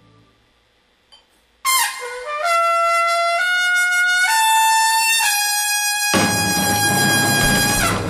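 Unaccompanied trumpet, after a brief near-silent pause, playing a jazz phrase of held notes that step up and down in pitch. About six seconds in, the rest of the band comes in loudly under it with drums and bass.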